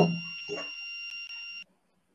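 Kahoot quiz game audio playing over a screen-share: a steady high electronic tone, held for about a second and a half and then cutting off suddenly as the question timer runs out. A voice is heard briefly at the start.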